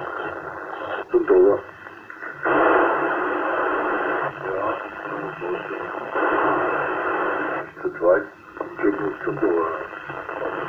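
Yaesu HF transceiver's speaker giving received 27 MHz CB-band audio on channel 1: thin, narrow-band hiss and static that cuts out and comes back several times, with faint, broken voices of distant stations coming through the noise.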